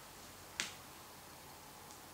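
A single sharp click about half a second in, over a faint steady hiss of room tone, with a much fainter tick near the end.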